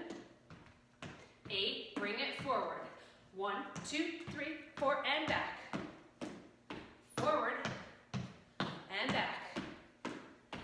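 A woman's voice speaking in short phrases, with sneaker steps and taps on a hardwood floor between them.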